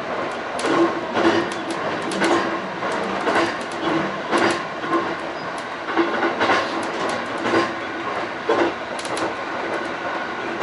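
E531 series electric train running, heard from inside its front cab car: a steady rolling noise with wheel clicks over the rail joints at uneven intervals, roughly one to three a second.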